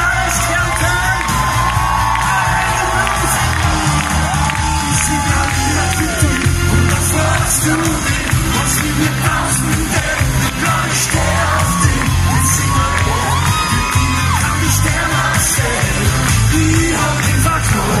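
Live pop concert music over a loud PA: a heavy, steady bass-and-drum beat with a man singing into a microphone, and a crowd cheering and singing along.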